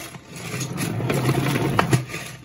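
Plastic salad spinner being spun by hand with wet LEGO bricks inside: a steady whirring hum with quick clicking rattles over it, dipping briefly just after the start before picking up again.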